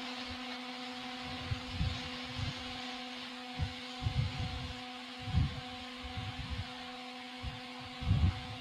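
Room tone during a silent pause: a steady low hum with a faint hiss, broken by a few soft, low thumps.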